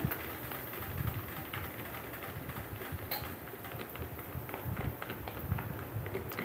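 Faint sizzling and crackling of broken pasta frying in a little oil in a pan as crushed garlic goes in, with light handling of the spatula and one sharp tap about three seconds in.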